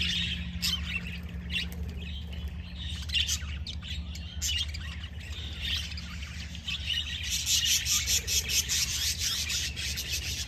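A flock of budgerigars chattering and chirping, many calls overlapping, getting busier and louder about seven seconds in. A steady low hum runs underneath.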